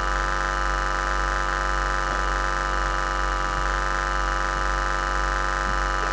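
Steady electrical buzz from a public-address system: a low hum with a brighter buzz above it, unchanging in level and pitch.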